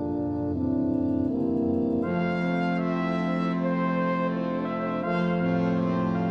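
Orchestral music led by brass: horns, trumpets and trombones holding chords. The sound fills out and brightens about two seconds in, with a new low chord just after five seconds.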